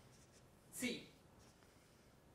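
Felt-tip marker writing on flip-chart paper, faint scratching strokes. A short voice calls out once, about a second in.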